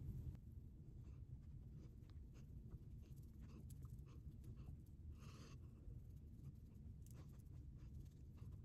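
Near silence with a low room hum: faint scratchy brushing of a makeup brush on the cheek, with a few light ticks and one short hiss about five seconds in.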